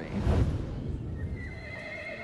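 A horse whinnying, loudest in the first second and then fading.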